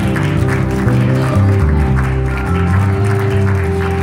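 Live worship band music: a strong bass line moving note to note under sustained chords.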